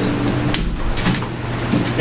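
A steady low hum with a faint high-pitched whine over it, and two short clicks, about half a second and a second in.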